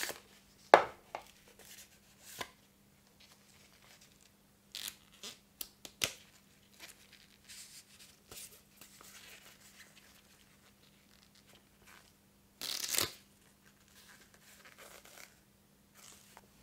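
Paper rustling as a folded quick start guide and its card sleeve are handled and unfolded: a sharp paper snap a little under a second in, scattered light rustles and flicks, and a louder half-second rustle near the end.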